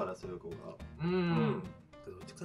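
A person's drawn-out hummed "mmm" of agreement about a second in, lasting about half a second, over soft background music.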